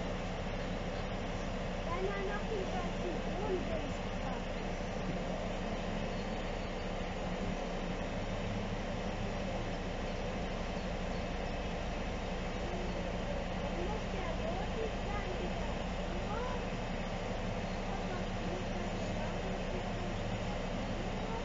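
Diesel engine of heavy construction machinery running steadily at a constant low hum while a 12-tonne pump shaft hangs from it and is lowered.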